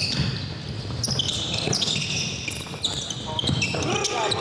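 A basketball being dribbled on a hardwood gym floor, with repeated bounces and many short, high sneaker squeaks on the court. Players' voices are heard in the echoing gym.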